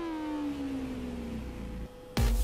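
A single synthesized tone with overtones, gliding slowly down in pitch and fading out about a second and a half in, over a faint low bass; a pitch-drop in the electronic background music.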